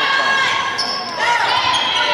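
Indoor volleyball rally in a reverberant gym: many voices from players and spectators calling and cheering the whole time, with the knocks of the ball being played.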